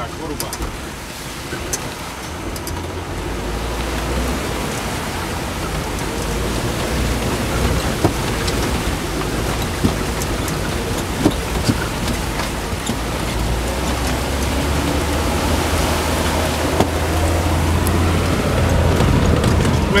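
Inside the cabin of a jeep driving on a rough, muddy track: a steady engine drone that grows louder toward the end, under a constant hiss of tyre and road noise. Occasional short knocks come as the vehicle jolts over the rocks.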